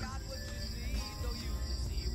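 Lull between speakers filled by faint background music, a steady high-pitched insect drone of crickets, and a low rumble.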